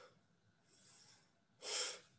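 A man taking deep, audible breaths: a faint breath about a second in and a louder, longer one near the end. This is deliberate deep breathing of the kind called hyperpnea.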